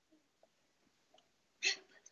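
Near silence, then one short vocal sound from a woman about a second and a half in.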